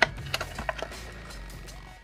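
A cardboard miniatures box being opened by hand: a sharp click at the start, then a few lighter clicks and scrapes of card within the first second, over quiet background music.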